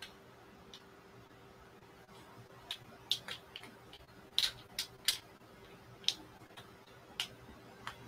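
Scattered light clicks and ticks, about ten irregularly spaced, as hands adjust threads and tama bobbins on a marudai braiding stand, over a faint steady hum.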